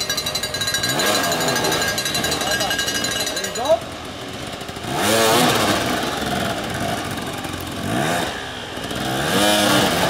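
Several off-road dirt bike engines revving in uneven bursts at low speed, their pitch rising and falling, loudest about five seconds in and again near the end. A short sharp noise cuts in a little before four seconds.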